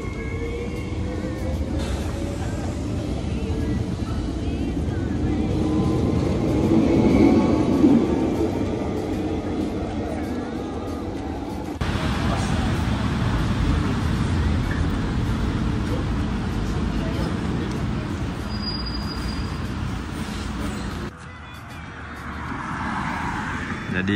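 Double-deck electric commuter train pulling away from the platform, its motor whine rising slowly in pitch over the running noise. About halfway through this gives way to the noise of a covered bus station, and it turns quieter near the end.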